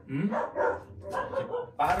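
A dog vocalizing in short, pitched whining cries, excited while it waits to be let at the food. A man's voice comes in near the end.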